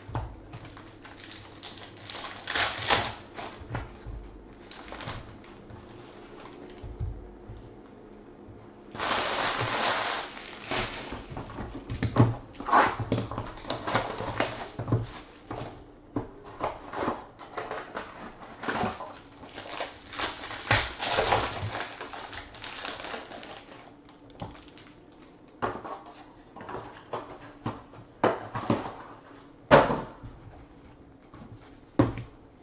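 Trading card packs being torn open and the cards handled: wrappers crinkling, cards sliding and slapping onto stacks, and cardboard being handled. It comes as a string of short rustles and clicks, with a longer rustle about nine seconds in.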